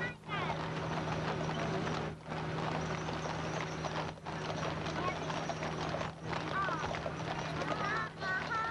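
Hooves of a team of Clydesdale horses clip-clopping on asphalt as they pull a wagon, with a few voices and a steady low hum underneath. The sound drops out briefly about every two seconds.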